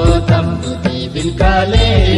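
Music from a Mundari Christmas song: a melody line that bends in pitch, over a steady low drum beat.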